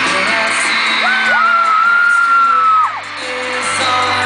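Live pop concert music in an arena. A nearby fan screams one long high note that lasts about two seconds and cuts off sharply about three seconds in.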